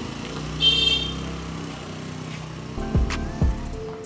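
A motor vehicle running steadily in the street, with a short high-pitched tone about half a second in. Near the end, background music with deep falling bass notes comes in.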